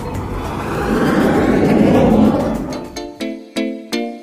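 Jet plane fly-past sound effect: a rushing noise that swells to its loudest about two seconds in and fades out by three seconds. Background music with a repeating pattern of plucked keyboard-like notes starts about three seconds in.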